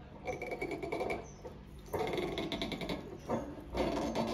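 Waiter's corkscrew being twisted into a wine bottle's cork, the cork and metal squeaking and creaking in three drawn-out spells of about a second each.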